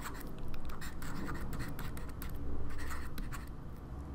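Handwriting with a stylus on a tablet: quick, scratchy pen strokes as a word is written out, over a low steady hum.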